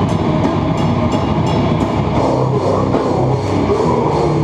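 Live rock band playing loud, with a drum kit and guitars; the drum hits keep an even beat of about three a second for the first half, then blur into the rest of the band.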